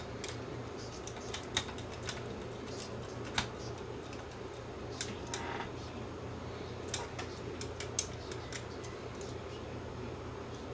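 Scattered light clicks and taps of small metal and plastic parts as a cassette deck's tape transport mechanism is handled and set back into its chassis, with a short scrape about five seconds in. A steady low hum runs underneath.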